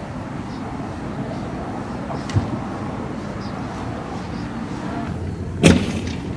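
Vehicle engines running steadily, with a fainter sharp crack a little after two seconds in and a single loud bang near the end.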